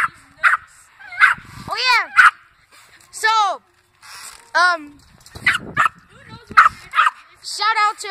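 Small dog barking repeatedly: about ten short, sharp, high barks at irregular intervals.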